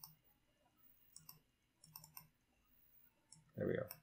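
Computer mouse clicking: several short, quiet clicks, some in quick pairs or threes, spread through the stretch.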